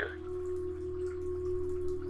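Soft meditation background music holding one steady, pure-sounding note, over a low steady hum.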